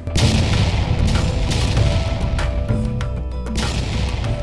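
Fireworks sound effect: a sudden boom that rumbles and crackles as it dies away over the first few seconds, with background music under it.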